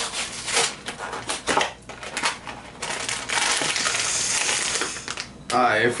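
Cardboard blind box being torn open, a string of short rips and crackles, then about three seconds in a longer continuous crinkling as the wrapped packet inside is pulled out and handled.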